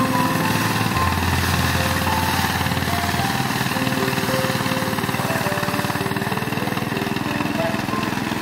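Small engine of a mini rice thresher running steadily, driving the threshing drum while sheaves of rice are held against it.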